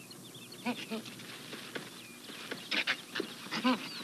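Infant chimpanzees laughing: short, breathy, pant-like calls that come in three brief bunches, heard from an old film soundtrack.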